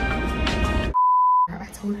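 Background music that cuts off abruptly about a second in, followed by a single loud, steady electronic beep lasting about half a second, a censor-style bleep tone; a woman's voice begins right after.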